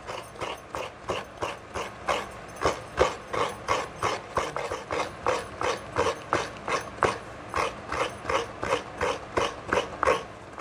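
Fresh coconut being grated by hand, a steady run of short rasping scrapes at about three to four strokes a second.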